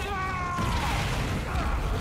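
A man's long cry of "Mother!" from the film soundtrack, falling in pitch, followed by a low rumbling of explosions and fire.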